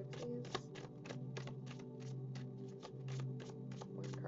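Oracle card deck being shuffled by hand: a quick, irregular run of soft card flicks and snaps, about five a second. Background music with a steady low drone plays under it.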